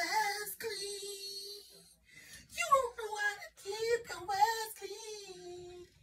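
A woman singing two long drawn-out notes with vibrato, the first lasting about two seconds, the second longer, wavering in pitch and then held on a lower note until it fades.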